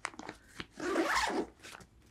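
Zipper on a nylon backpack's front pocket pulled shut in one run of about half a second near the middle, after a few small clicks of the pull and fabric.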